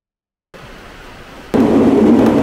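A moment of silence, then faint outdoor ambience. About midway a loud, steady running noise starts abruptly inside a local train's passenger cabin.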